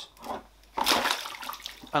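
A set of scuba regulators with their hoses dropped into a plastic tub of water: a sudden splash about a second in that dies away as the water settles.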